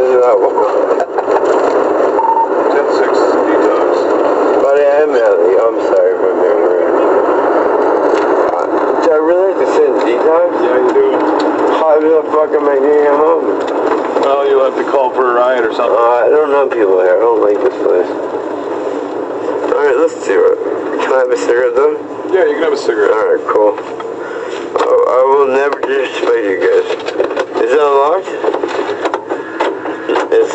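Indistinct, muffled talking heard through a thin, tinny recording, with no words that can be made out.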